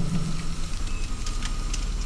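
Steady low hum of background noise with a few faint ticks, in a pause between spoken sentences.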